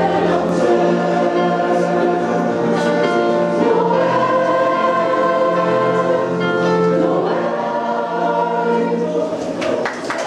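School choir singing with long held notes, accompanied on a digital piano.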